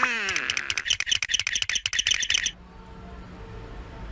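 Cartoon sound effects: a quick falling glide over a run of rapid clicks, then fast, high bird-like chirping that cuts off suddenly about two and a half seconds in, leaving a faint low background.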